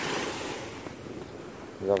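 A soft rushing hiss of small waves washing on a sandy shore and wind, fading over the first second and a half; a man's voice begins near the end.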